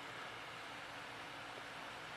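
Faint steady hiss of room tone, with no distinct sounds standing out.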